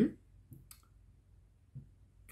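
A couple of faint, sharp clicks and a soft knock as a glass beer mug is handled and set down on a tabletop.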